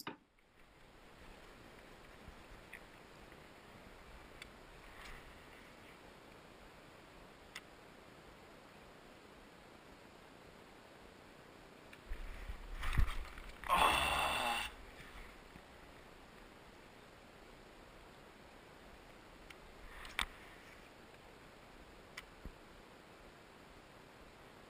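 A cast with a fishing rod and reel from a kayak. A little past halfway there is a knock, then about a second of whirring as line runs off the reel. Otherwise it is quiet, with a few light clicks.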